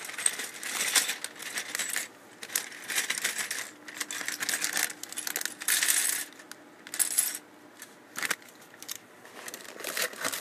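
Small plastic LEGO pieces clattering and clicking against each other in a plastic bag and on a glass desktop, with the bag crinkling. The sound comes in short bursts with brief pauses and is quieter in the last second or two.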